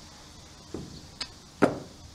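Three short knocks on a wooden door, the last one the loudest.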